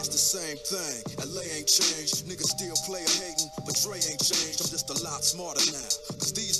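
Hip hop track playing, with a steady beat and a rapping voice.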